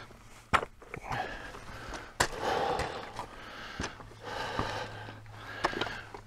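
Boots clacking and scraping on loose rock while scrambling up a stony path, with sharp knocks roughly every second and a half. Between the steps comes the hiker's heavy breathing.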